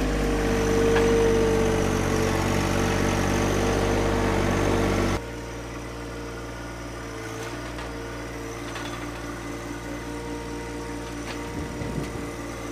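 John Deere 1025R sub-compact tractor's three-cylinder diesel engine running steadily, with a brief higher whine in the first couple of seconds. The sound drops noticeably quieter about five seconds in and runs on steadily.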